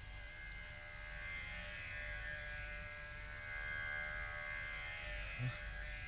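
Soft background film-score music: a sustained drone chord held steady throughout, swelling slightly in the middle, with a low hum beneath it.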